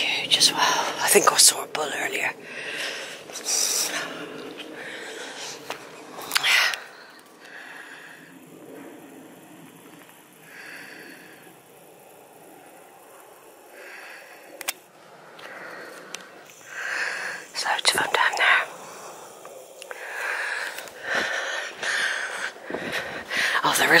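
A woman whispering in short breathy phrases, too soft for the words to be made out, with a quieter stretch in the middle.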